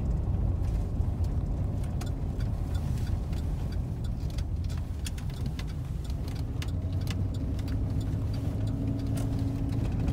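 Engine and road noise inside a moving sheriff's patrol car: a steady low rumble. A faint steady hum joins it about six or seven seconds in.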